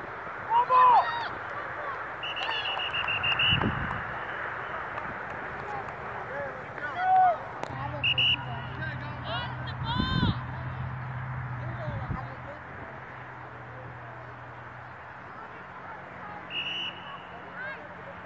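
Indistinct voices of coaches, players and spectators calling out across an open football field, in short scattered shouts over a steady outdoor background.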